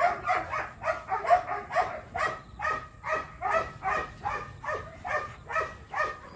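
Belgian Malinois dog panting hard in quick, even breaths, about four a second, while excited during mating.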